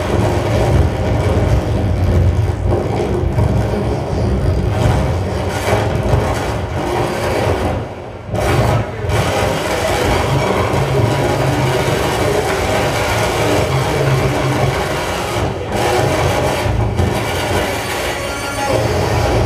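Live electronic noise music: a dense, loud wall of grinding, rumbling noise with a heavy low end, dropping out briefly about eight seconds in before carrying on.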